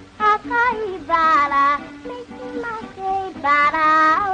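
A young girl singing a song in Japanese with instrumental accompaniment, her voice moving through short held notes.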